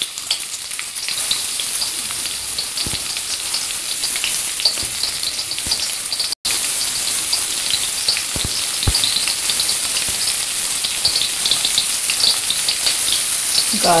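Chopped onion sizzling and crackling in hot oil in a steel kadai, a steady frying hiss with a brief dropout about six seconds in.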